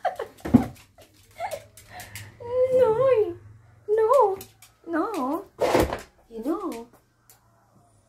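A high, sing-song voice cooing in short, wavering phrases. There are two sharp knocks, one about half a second in and a louder one near six seconds.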